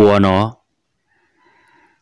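A voice finishes speaking about half a second in. After a silent gap, a rooster crows faintly in the background near the end.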